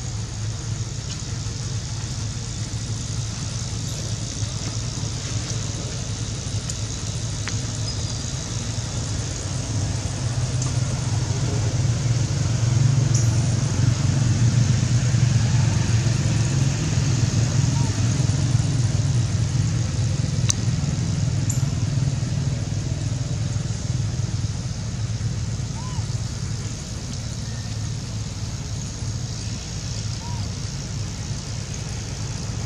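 Steady low rumble of motor-vehicle engine noise over a faint hiss, growing louder in the middle and easing off again.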